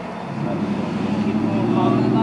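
A road vehicle's engine running close by: a low steady drone that comes in about a third of a second in and grows louder.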